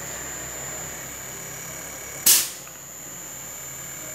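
Small air-conditioner compressor force-run by a Panasonic inverter outdoor-unit board, running with a low steady hum. One sharp click a little past the middle.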